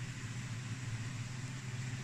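Steady low background hum with a faint hiss, unchanging throughout, with no distinct events.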